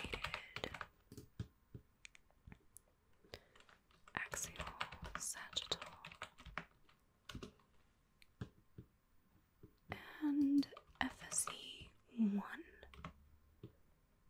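Typing on a laptop keyboard, close to the microphone: runs of soft key clicks for the first several seconds, thinning to scattered taps. Soft breathy voice sounds come in near the end.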